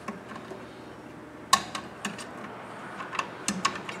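Light clicks and ticks of sheathed electrical cable being handled and pushed into a plastic switch box, with one sharper click about a second and a half in.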